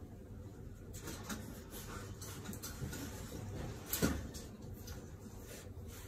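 Faint, scattered clicks and knocks in a quiet room, with one sharper knock about four seconds in.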